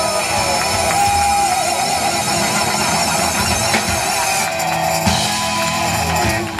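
Live amplified rock band playing: electric guitars, bass guitar and drum kit, with the high end growing brighter in the last second or so.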